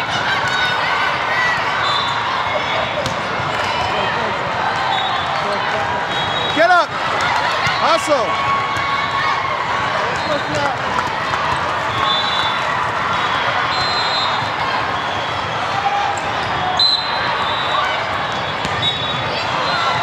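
Volleyball rally on a hardwood court in a large, echoing hall: a steady hubbub of many spectators' voices, with short sneaker squeaks and a few sharp hits of the ball, two of them close together about seven and eight seconds in.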